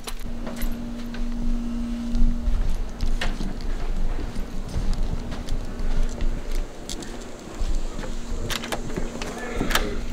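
Footsteps and handling noise with a low rumble, a steady hum in the first two seconds and again later on, and scattered sharp clicks; a pair of clicks near the end fit a front door's knob and lock being worked.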